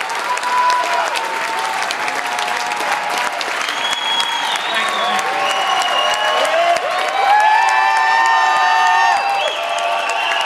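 A large crowd applauding, with many voices cheering and shouting over the clapping, loudest about seven to nine seconds in.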